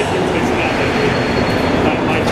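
Montreal MR-73 metro train standing at a station platform: a steady noisy hum with a faint high whine from the train, and voices echoing in the station around it.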